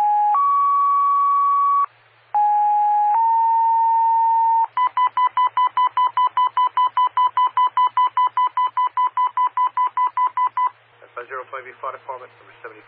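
Fire dispatch two-tone sequential paging tones heard over a scanner radio: two pages, each a short lower tone stepping up to a longer higher one, followed by a run of rapid beeps at about six a second. These tones set off the pagers and station alerting of the departments being dispatched. A dispatcher's voice starts near the end.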